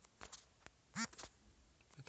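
A single short wordless 'hm'-like voice sound about a second in, its pitch rising and falling, after a faint click; otherwise quiet.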